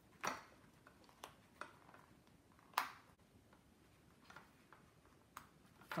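Metal binding rings clicking shut as they are pushed closed through the punched holes of a stack of card pages. Two sharp clicks, one just after the start and one about two and a half seconds later, with a few fainter ticks between and after.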